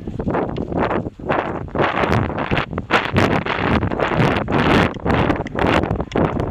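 Wind buffeting the microphone of a Drift Stealth 2 helmet camera on a moving rider, a loud rumbling noise that surges and dips irregularly.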